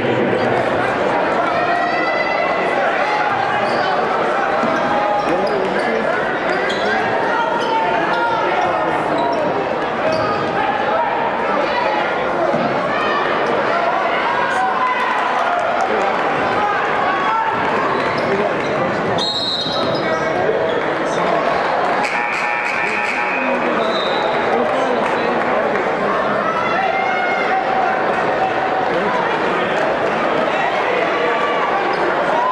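A basketball dribbled on a hardwood court under the steady din of a crowd talking and shouting in a large gymnasium. A few brief high-pitched sounds stand out about two-thirds of the way through.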